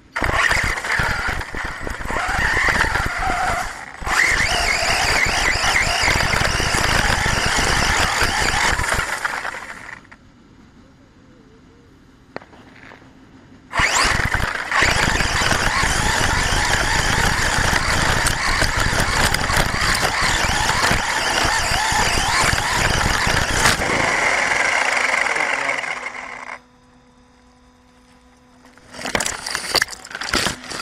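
Onboard-camera sound of an HPI Savage XS Flux brushless RC monster truck running away at speed through long grass, its throttle not cut because the failsafe failed to kick in: loud rushing noise of the motor, drivetrain and tyres in grass, with a whine. It runs for about ten seconds, drops to a quiet hum for a few seconds, runs again for about twelve seconds, then falls quiet and picks up once more just before the end.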